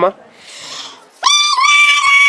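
A boy's loud, high-pitched yell, held at one pitch, starting about a second in and lasting over a second: his shout of 'Big Mama' given on request.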